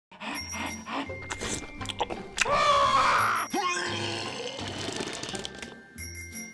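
Intro theme music with a steady low beat, with a louder wavering tone about halfway through that ends in a short upward glide.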